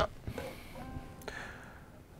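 Faint ringing of a three-string electric cigar box guitar's strings as fingers are set on the fretboard, with a light click a little after a second in.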